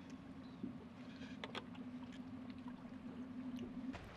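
Faint, steady low hum aboard a flats boat, with a few light clicks and taps scattered through it.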